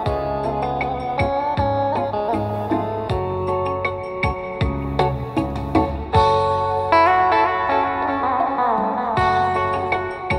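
Guitar music with a bass beat played loud through a bare Pioneer woofer driver with no cabinet, fed from a hi-fi amplifier. It is a test that the used driver still plays cleanly at high volume.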